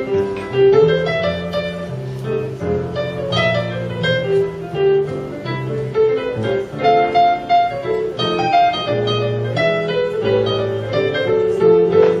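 A recording of solo jazz piano being played back, with low bass notes moving under chords and melody.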